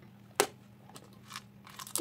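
Small plastic items being handled: one sharp click about half a second in, then a few fainter clicks and rustles.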